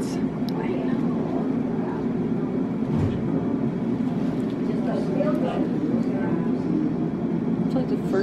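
Steady low mechanical hum of room equipment, with faint low voices about halfway through.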